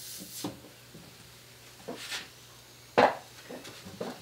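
Light handling knocks of a hose-fed steam needle being worked into an acoustic guitar's neck joint, with one sharper brief noise about three seconds in.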